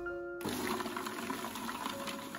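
Background music with a steady melody. From about half a second in, an even whirring noise runs under it: a food processor blending frozen strawberries into a slush.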